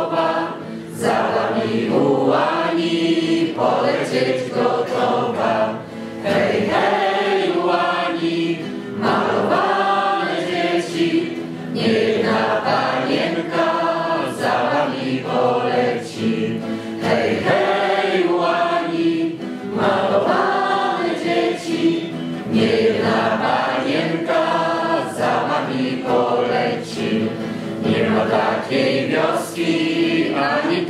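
A choir singing together, phrase after phrase, with brief pauses between the phrases.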